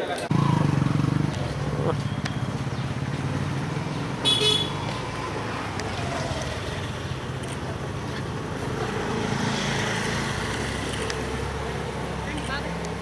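Street background of vehicles running and people talking, with a brief high-pitched horn toot about four seconds in.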